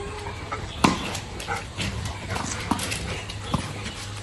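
Dogs yipping and whimpering with excitement as a tennis ball is held up for them to fetch, with several short sharp knocks scattered through.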